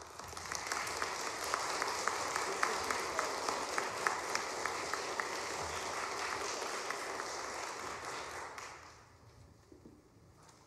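Audience applause after a jazz choir's song ends: dense clapping that rises quickly, holds steady, and dies away about nine seconds in.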